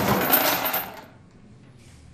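A metal chain jangling and rattling, handled on a table as a live sound effect for the ghost's chains. It dies away about a second in.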